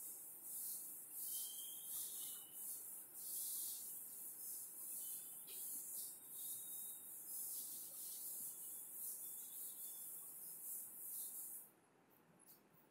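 Blackboard eraser rubbing across a chalkboard in repeated faint hissing strokes, about one or two a second.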